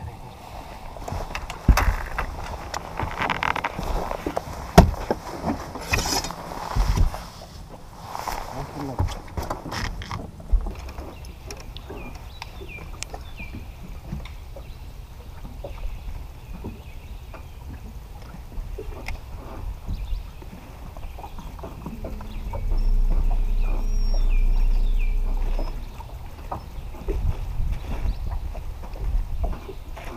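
Sounds from the deck of a bass boat: knocks and handling noises on the deck, with a steady low hum lasting about three seconds a little past the middle.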